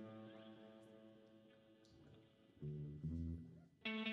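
Live band playing sparsely: an electric guitar chord rings out and slowly fades, two low bass notes follow, and a louder, fuller chord comes in near the end.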